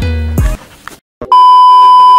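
Background music with a beat breaks off about half a second in. After a moment of silence, a loud, steady, single-pitched test-tone beep starts, the kind that goes with TV colour bars.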